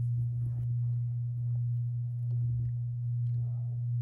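A steady low hum, the loudest thing heard, with faint soft crackles and rustles from wet pink play sand being squeezed and kneaded in the hands.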